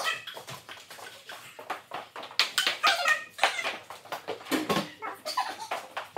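Table-tennis rally: a ping-pong ball clicking back and forth off paddles and the table, with several short high-pitched whines mixed in.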